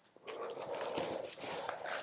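Stiff organdy cloth rustling as it is unfolded and spread out by hand.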